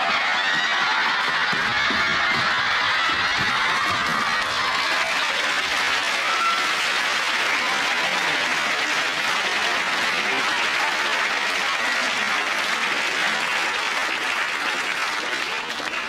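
Studio audience laughing and applauding, a long steady wash of clapping that eases slightly near the end.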